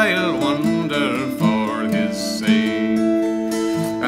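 McIlroy acoustic guitar picked in a slow accompaniment to an Irish ballad, held notes ringing under one another.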